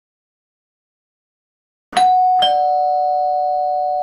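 A two-note ding-dong doorbell chime about two seconds in: a higher note, then a lower one half a second later, both ringing on and fading slowly. It signals a visitor at the door.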